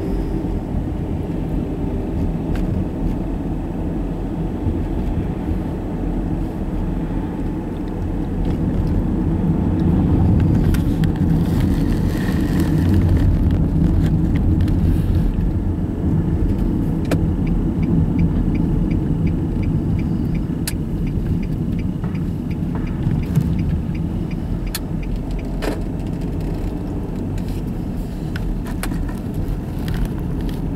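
Road noise of a moving car heard from inside the cabin: a steady low rumble that grows louder for a while past the first third. A light, regular ticking runs for several seconds past the middle.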